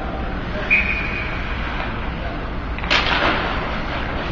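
Ice hockey play echoing in an indoor rink: a short high ringing ping about a second in, then a loud sharp bang with a reverberant tail about three seconds in, over steady arena background noise.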